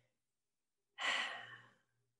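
A person's sigh: one breathy exhale of under a second, starting about a second in and trailing off, with silence before it.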